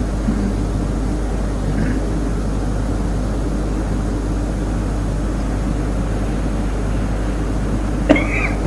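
A steady low hum over an even hiss, unchanging throughout, with no other distinct sounds.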